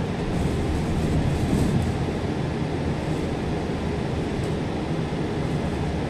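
Steady low rumble of a bus driving along, its engine and running gear heard from inside the cabin.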